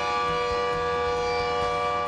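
Continuous fire siren of a process plant sounding one steady, unwavering tone, not a wail. It is the signal of a fire in a process plant, warning workers to leave the area.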